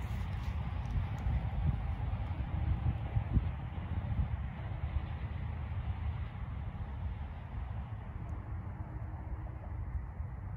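Wind buffeting the microphone: a steady low rumble that rises and falls a little.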